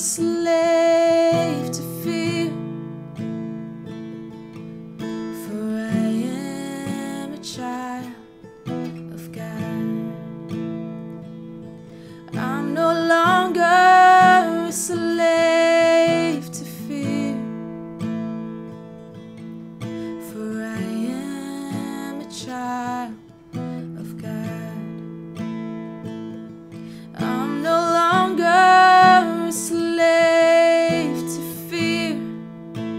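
A woman singing a slow worship song, accompanying herself on a strummed acoustic guitar. Her sung phrases come in swells, loudest about 13 to 16 seconds in and again near the end, with quieter guitar passages between them.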